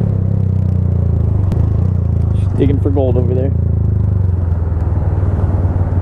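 A 2017 Honda Grom's 125 cc single-cylinder engine running at a steady speed while riding, with a heavy low rumble. A brief voice comes in between about two and a half and three and a half seconds in.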